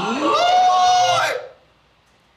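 A man's wordless vocalising: a rising, drawn-out "ooh" held on one high note for about a second, which stops about a second and a half in.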